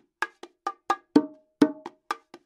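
Pair of bongos played with bare hands in a martillo-style groove: quick, sharp strokes about four a second, with two louder open tones that ring briefly around the middle.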